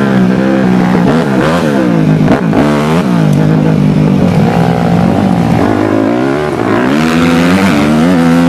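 Dirt bike engine running loud, its pitch rising and falling over and over as the throttle is opened and eased off. It is heard up close from the moving bike.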